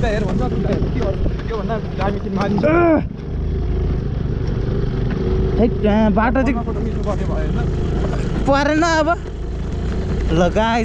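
A scooter riding over a rough, stony dirt track: a steady low rumble of the motor and tyres on the stones. A voice cuts in briefly a few times.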